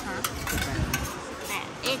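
A metal spoon scraping and clinking in a stainless steel compartment food tray, with a few light clinks over a steady hiss of background noise.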